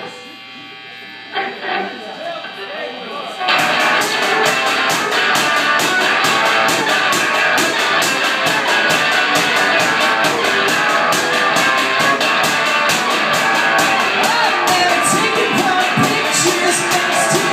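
A live rock band playing electric guitar and drums. It is quiet for the first few seconds, then the whole band comes in loud and together about three and a half seconds in, driving a fast, even beat.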